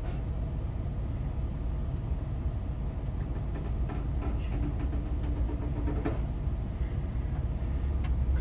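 Steady low rumble of an idling minivan heard from inside the cabin, with a faint steady hum joining in for a couple of seconds in the middle.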